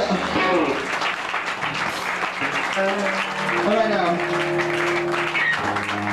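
A live rock band's song ends abruptly just after the start, and the audience claps and cheers, with whoops and a few held tones over the clapping.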